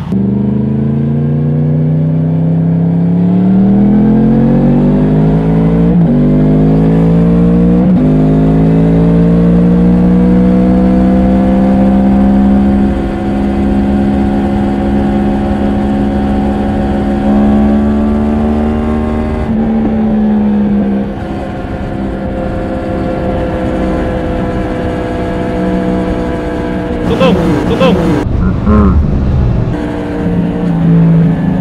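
Yamaha MT-10's crossplane inline-four engine heard from the rider's seat, accelerating with its pitch rising for the first few seconds and then holding a steady cruise. About twenty seconds in, the throttle eases and the engine settles to a lower, steady tone. A brief rush of noise comes near the end.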